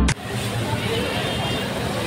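Background music cuts off abruptly at the very start, giving way to steady busy-street noise: traffic with indistinct voices.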